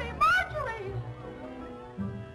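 A woman's short, high-pitched scream about a quarter of a second in, over dramatic film-score music with held string notes.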